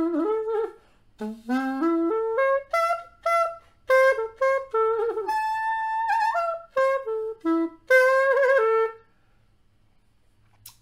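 Xaphoon, a single-reed pocket sax, playing a phrase in A minor built on the minor arpeggio: a held note sliding up, a short break about a second in, then notes climbing step by step to a long high note. It comes back down in a run of short notes and stops about nine seconds in.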